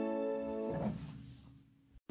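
Upright piano chord ringing on, then one more low note or chord struck just under a second in, and the sound dying away to almost nothing: the close of a piece played by ear.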